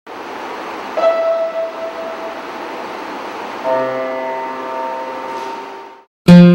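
Song intro: a steady hiss-like noise with one held note entering about a second in and a soft chord of several held notes at about four seconds, the whole fading out near the end.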